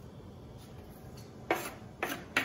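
Chopped onion and bell pepper being scraped off a wooden cutting board into a frying pan of ground beef: quiet scraping, with one sharp knock about one and a half seconds in.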